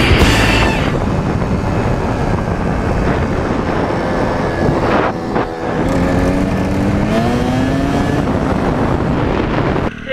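Kawasaki dirt bike engine running hard at speed, with heavy wind rush on the helmet camera. About halfway through the engine drops off briefly, then its pitch climbs steadily as it accelerates again.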